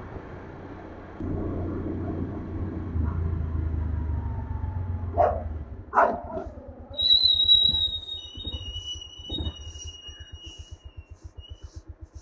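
Motorcycle engine running as the bike rides along, then idling with an even low thudding beat of about five pulses a second. Two short barks from a dog come about five and six seconds in, and a thin high tone sounds through the second half.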